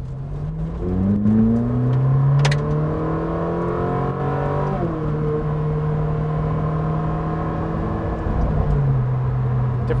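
Ferrari 458 Speciale's naturally aspirated V8 accelerating hard, its pitch climbing for about five seconds until a quick upshift drops it, then running at a steady pitch with a smaller drop near the end. A short sharp click about two and a half seconds in.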